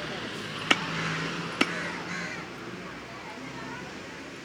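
Two sharp chops of a blade into raw chicken on a wooden chopping block, the first just under a second in and the second about a second later.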